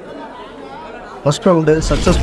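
Indistinct crowd chatter in a large hall. About a second in, a voice starts up over it, and near the end a deep, steady music bass comes in.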